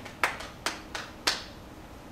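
Three sharp knocks or claps, irregularly spaced over about a second, in a quiet room.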